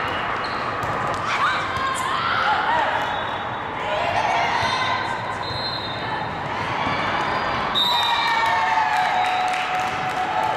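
Indoor volleyball rally in a large, echoing hall: ball hits and bounces, and players' voices calling out over a continuous babble of voices from the surrounding courts.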